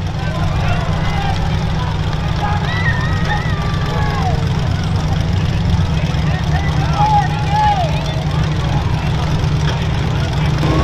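Engines of several full-size demolition derby cars running together, a loud, steady low rumble with no pauses.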